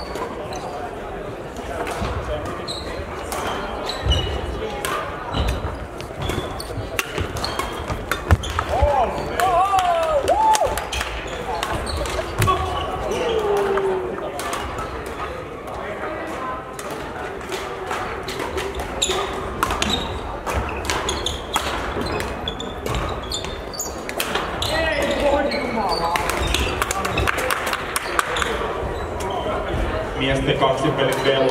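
Sports-hall hubbub of badminton played on several courts: frequent sharp racket hits on shuttlecocks and footfalls on the sprung floor, a few shoe squeaks around the middle, and background chatter, all echoing in the big hall.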